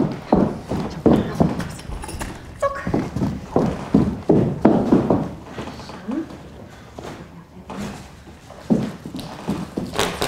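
A run of knocks and clatter as things are rummaged out of a shopping trolley and cardboard placards are handled, with a voice now and then.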